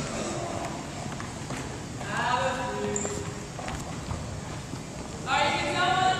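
Footsteps of a group of people walking and jogging across a hardwood gymnasium floor, a scatter of soft knocks, with indistinct voices talking, louder near the end.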